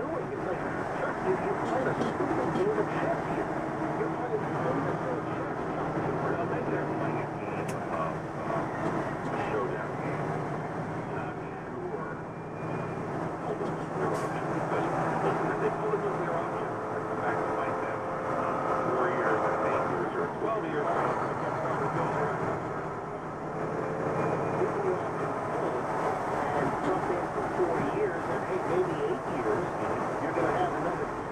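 Steady engine and road noise inside a semi-truck cab on a wet highway, with an indistinct voice from the cab radio underneath.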